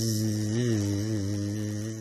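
A man's voice imitating a bee's buzz: one long, low, steady 'bzzz' that wavers slightly in the middle.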